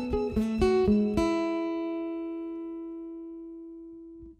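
Acoustic guitar ending a song: a few plucked notes in the first second or so, then the final chord left ringing and slowly fading away.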